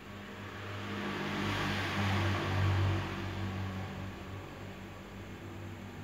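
A motor vehicle passing, its engine hum and road noise swelling to a peak about two and a half seconds in, then fading.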